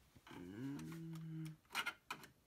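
A person's drawn-out, low hummed "mmm", just over a second long, bending up at the start and then held steady. A short sharp sound follows near the end.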